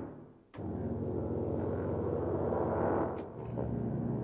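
Sampled low brass ensemble (ProjectSAM Symphobia 4: Pandora) playing a 'cluster slow landing' effect: a dense, dissonant low brass cluster that enters abruptly about half a second in and is held. About three seconds in, a second, lower variation takes over.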